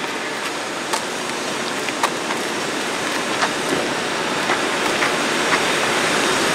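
Steady rushing noise, growing slightly louder, with a few faint light clicks about one, two, three and a half and five and a half seconds in.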